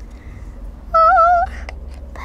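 A child's high-pitched, slightly wavering wordless whine, about half a second long, about a second in: a doll voice sounding nervous. A small click follows just after.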